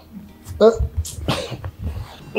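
Two short wordless vocal bursts from a person, the first about half a second in and the second a little after a second.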